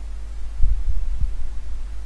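Steady low hum from the recording setup, with a few dull low thumps a little past half a second in and again just after a second.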